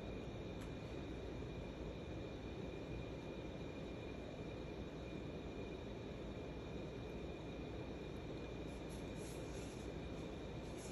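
Steady, faint background hum and hiss with a thin, high, steady tone running through it.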